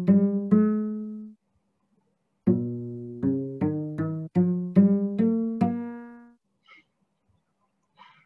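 Cello plucked pizzicato, playing rising minor scales note by note. One scale ends on a ringing note about a second in, and after a short pause a second rising scale of about eight plucked notes follows, fading out past the middle. The scales are tuned from divisions of one string, so the ones starting on a higher note sound a little bit off, their minor third coming out as 27/32 instead of 5/6.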